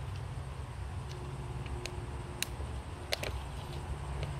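Quiet backyard outdoor ambience: a steady low rumble with a few faint, sharp clicks about halfway through and again near the end.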